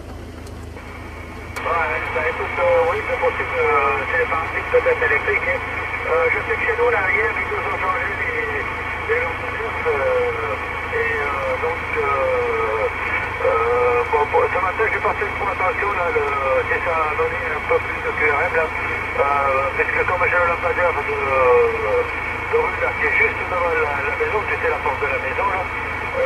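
A man's voice received over a CB radio on lower sideband, coming thin and narrow-band from the set's speaker, with a steady high tone running underneath; the voice starts about a second and a half in after a brief quieter gap.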